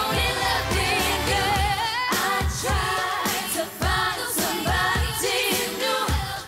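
Female pop vocal group singing live into microphones, several voices with wavering vibrato runs, over a steady bass-heavy pop beat.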